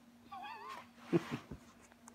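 A kitten's short meow, its pitch wavering up and down, followed about a second in by a person's brief laughter.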